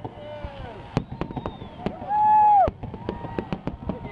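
Fireworks display: scattered bangs and crackling bursts with several whistles falling in pitch. About two seconds in comes the loudest sound, a half-second whistle that drops in pitch as it ends.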